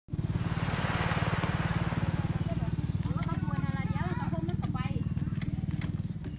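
Small motorcycle engine idling steadily, with a fast, even low pulse. People's voices come in over it about halfway through.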